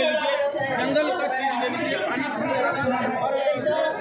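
A man talking, with other voices chattering around him.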